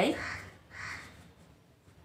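A bird calling twice in quick succession, each call short and hoarse.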